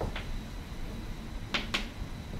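Chalk tapping on a blackboard as points are dotted onto a drawing: two quick sharp taps at the start and two more about one and a half seconds in.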